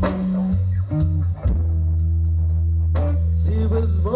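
Live blues band playing electric guitars and bass guitar. The bass moves through a few notes, then holds one long low note for about two seconds.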